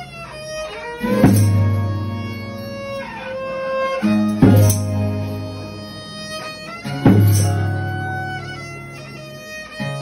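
Folia de Reis ensemble music: strummed violas with a violin playing sustained, sliding lines over them. A heavy accent with a strong low note comes about every three seconds.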